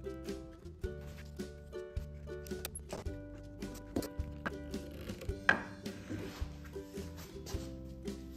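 Background instrumental music: a run of short pitched notes over sustained chords.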